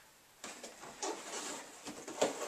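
Cardboard box being opened: the printed outer sleeve is slid off its inner tray, with irregular rustling and a few short scrapes starting about half a second in.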